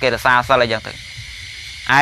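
A Buddhist monk speaking in Khmer: a man's voice for about the first second, then a pause of about a second in which a steady background hiss of the recording is heard, before his speech resumes at the end.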